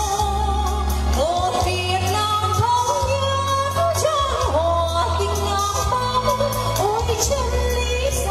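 A woman singing a Vietnamese song with vibrato over amplified backing music, with long held bass notes underneath.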